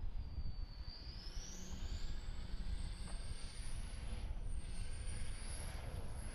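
Pickup truck straining to pull a loaded boat trailer up a slick, wet boat ramp, with its tyres slipping. There is a low, steady engine rumble and a thin high whine that rises over the first few seconds and then holds, wavering.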